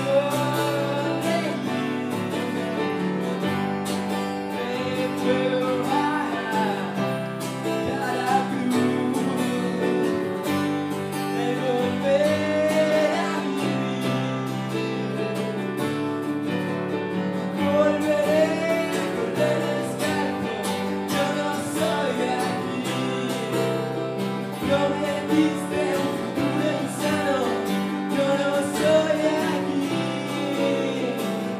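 Live acoustic guitar and electric keyboard playing a song together, with a voice singing long, wavering notes over them.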